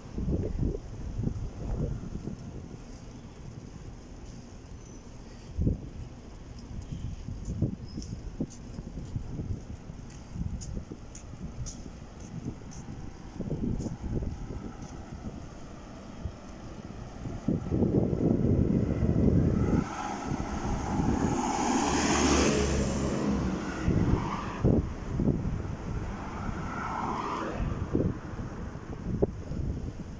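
Street ambience: wind rumbling in irregular gusts on the microphone, with a motor vehicle passing by in the second half, swelling from about two-thirds of the way in and loudest a little after, then fading.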